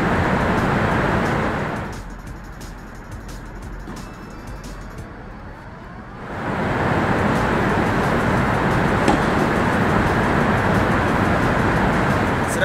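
Background music with a dense, full sound. It drops away about two seconds in and comes back about six seconds in. In the quieter middle stretch, faint scattered clicks can be heard.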